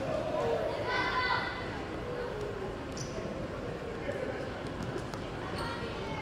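Indistinct voices and crowd murmur in a school gymnasium, with a basketball bouncing on the hardwood court a few times.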